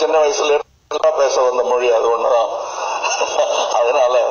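Only speech: a man talking into a handheld microphone, with a short break just under a second in.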